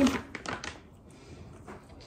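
A wet wipe being pulled out of a soft plastic dog-wipe pack and unfolded by hand, a few short rustles in the first second.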